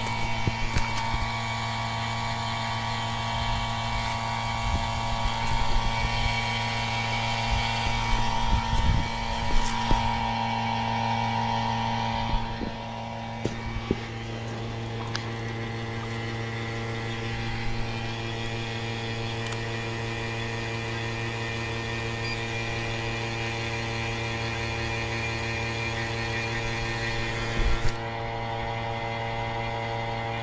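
Small two-stage electric vacuum pump running steadily with a humming note, evacuating refrigerant recovery tanks through manifold hoses. Clicks and knocks from the hoses and fittings being handled come through the first half. About twelve seconds in, the pump's sound drops a little as a higher tone fades out.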